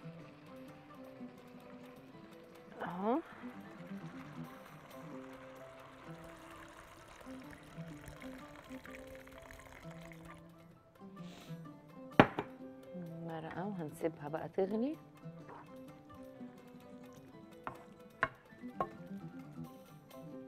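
Background music throughout, with liquid poured from a glass jug into a hot pan of softened sliced onions: a pouring hiss for several seconds. A little past the middle comes one sharp knock, the loudest sound, followed by a short stretch of a woman's voice.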